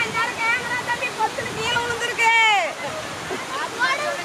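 Voices talking and calling out over a steady rush of water flowing over a small weir, with one long falling call a little past halfway.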